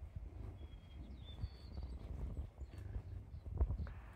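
Bison cows and calves grazing and moving close by: low, uneven scuffing and rustling from the herd, with a few short high chirps between about half a second and two seconds in.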